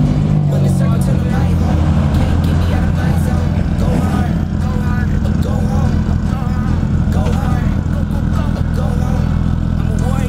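Several cars' engines run as they drive slowly past in a line, a steady low rumble, with people talking over it. Background music fades out in the first second or so.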